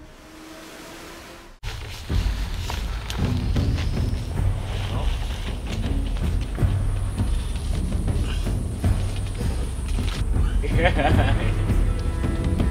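A faint hiss, then a sudden cut about a second and a half in to a steady low rumble with men's voices and music over it. The voices get louder near the end.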